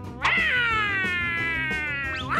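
A cartoon cat character's long, drawn-out yowl, voiced by a person. It starts suddenly about a quarter second in and slides slowly down in pitch.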